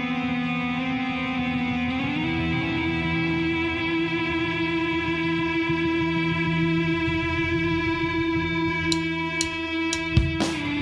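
Electric guitars of a rock band hold a sustained, droning chord, the pitch stepping up about two seconds in and then holding steady. Near the end, three evenly spaced sharp ticks come in about half a second apart.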